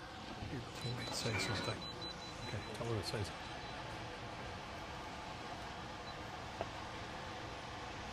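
Faint talking in the background for the first three seconds or so, then steady low room noise with a single small click near the end.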